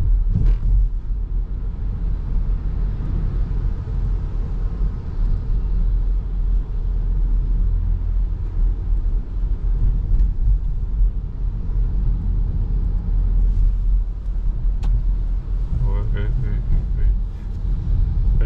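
Steady low road and engine rumble inside a moving Subaru car's cabin, driving on a rain-wet road.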